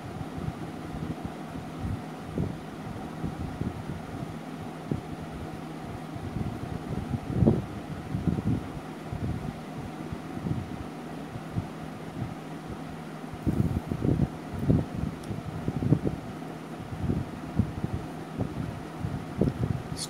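A steady low hum of room noise, with irregular soft low bumps and rubbing as a colour pencil is worked over a drawing book held by hand.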